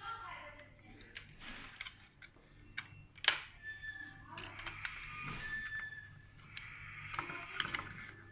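Handling noise from a plastic gooseneck LED desk lamp: clicks, knocks and rustling as the flexible neck is bent and the base is turned in the hands, with one loud sharp click about three seconds in.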